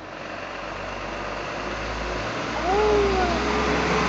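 A motor vehicle's engine and road noise growing louder over about three seconds, then holding steady.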